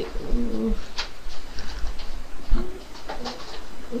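A child's drawn-out hesitation hum, "uhhh", held on one pitch for under a second, then two brief, shorter hums, with a couple of sharp clicks in between.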